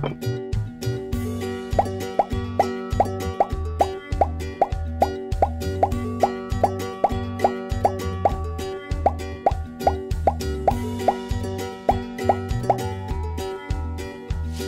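Upbeat background music: a bouncy track with a short rising 'bloop' note repeating about twice a second over held tones and a pulsing bass beat.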